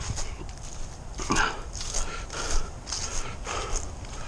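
A person breathing hard in uneven puffs while walking, footsteps crunching on a trail of dry fallen leaves.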